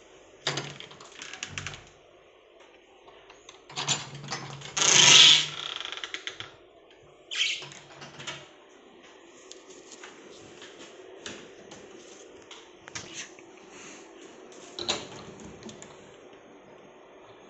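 Wooden wardrobe and cabinet doors being opened and handled: scattered clicks, knocks and clacks of doors and metal ring pulls, with a louder noisy burst about a second long around five seconds in.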